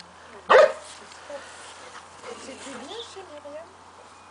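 A dog barks once, a single short loud bark about half a second in.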